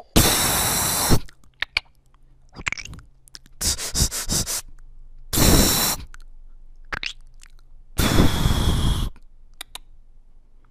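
Mouth sound effects from a beatboxer, spoken close into a small handheld microphone: long hissing bursts, one at the start, a pulsed one around four seconds in, another shortly after and a last one near the end, with small mouth clicks between them.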